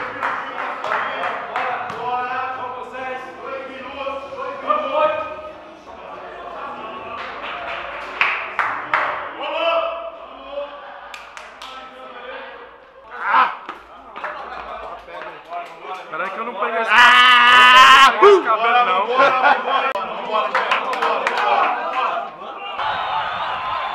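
Men's voices talking and calling out over one another without clear words, with one loud, drawn-out wavering shout about 17 seconds in.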